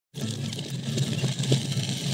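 A steady engine-like drone, with a crackling, ticking hiss of thin sea ice breaking and scraping against a kayak hull.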